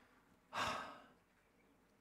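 A man takes one audible breath out, close to a clip-on microphone, about half a second in, fading away within about half a second; otherwise faint room tone.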